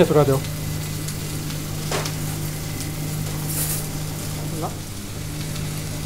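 Tandoori lamb chops sizzling steadily on a hot cast-iron sizzler plate over a gas flame, the ghee just drizzled over them spitting on the hot iron.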